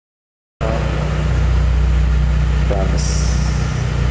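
A car engine idling with a deep, steady rumble, cutting in suddenly about half a second in. There is a brief high hiss about three seconds in.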